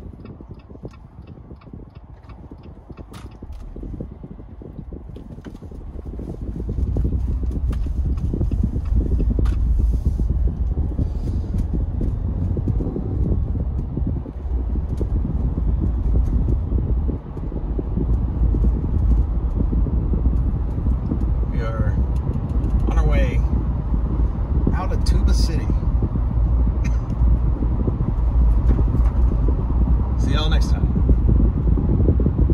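Car road and wind noise heard inside the cabin: quiet as the car moves off, then building after a few seconds into a steady low rumble as it gets up to speed.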